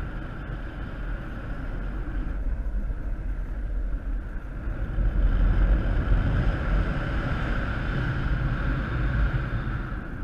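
Wind rushing over the camera microphone of a paraglider in flight, a steady low rumble that swells a little about five to six seconds in as the wing banks.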